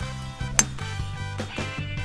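A golf club striking a ball off the tee: one sharp click about half a second in, over steady background music with guitar.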